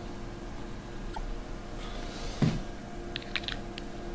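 A few quick, faint plastic clicks from fingers handling a small USB-stick spy camera, over a steady low hum.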